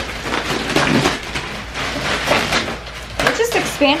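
Thin plastic wrap crinkling and rustling as it is pulled off a compressed foam mattress, a continuous crackle of many small sharp crinkles.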